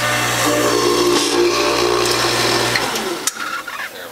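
Norwalk 290 juicer's electric motor running with a steady hum for nearly three seconds after being switched on, then switching off and winding down.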